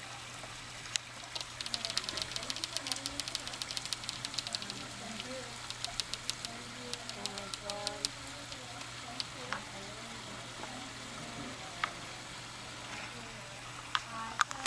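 Rapid crackling clicks of water and bubbles around a submerged camera, densest in the first few seconds and thinning out later, over faint voices talking and a steady low hum.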